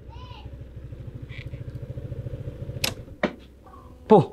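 Motor scooter engine running at low speed, a low pulsing that grows louder, then cut off about three seconds in with a couple of sharp clicks.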